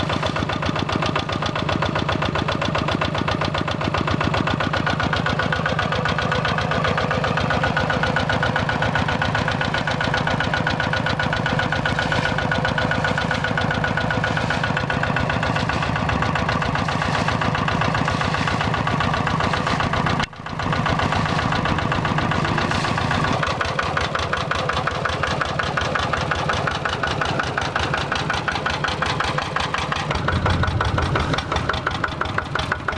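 Single-cylinder diesel engine of a Quick G3000 Zeva two-wheel walking tractor running steadily under load with a fast, even knocking beat as it churns through a flooded rice paddy. The sound breaks off for an instant about two-thirds of the way through.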